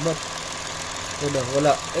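A man's voice briefly over the steady hum of a running car engine.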